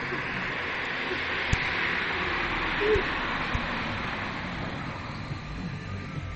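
A car passing on the road, its tyre and engine noise swelling to a peak about two seconds in and then slowly fading, with a few light knocks.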